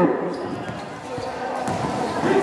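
A basketball being dribbled on a concrete court: a few short bounces.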